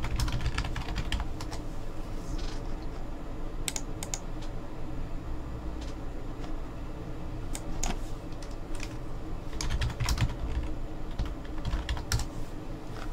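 Computer keyboard being typed on in short, irregular bursts of keystrokes.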